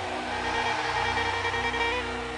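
Soft background music of sustained, steadily held chords, with no melody moving.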